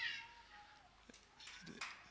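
A man's microphone voice trailing off with a falling pitch at the start, then a quiet hall with only faint scattered sounds.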